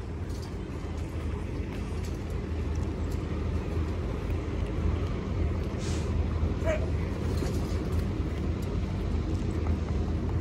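Outdoor street ambience: a steady low rumble with no music playing, and a short sharp sound about six seconds in.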